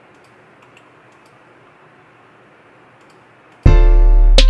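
Faint room hiss with a few soft mouse clicks, then near the end a hip-hop beat starts playing back from LMMS: a loud, sustained grand piano chord over very deep 808-style bass.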